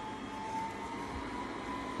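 Verefa L11 Pro robot vacuum running as it drives off its dock: a steady whir of suction fan and brushes with a faint whine that rises slightly about half a second in.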